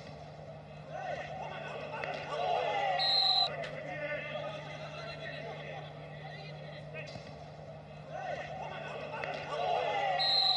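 Players' shouts carrying around an empty football stadium over a steady low hum, with one short referee's whistle blast about three seconds in.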